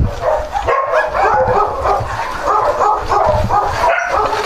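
Several dogs barking, their calls overlapping one another and running on without a break.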